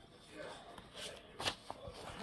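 Paper pages of a coloring book being turned by hand: faint rustling with a short, sharper paper flap about a second and a half in.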